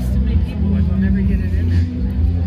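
Busy outdoor background: a steady low rumble under faint music and distant voices.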